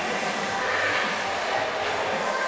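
Steady background noise of a gym, an even rush with no distinct knocks or clanks.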